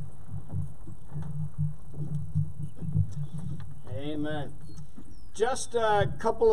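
A steady low rumble, with a brief voice about four seconds in and a man starting to speak into the microphone near the end.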